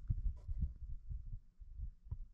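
Low, irregular thumping rumble on the microphone, with a few faint clicks.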